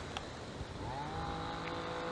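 A steady mechanical hum at several fixed pitches, with one short light click shortly after the start.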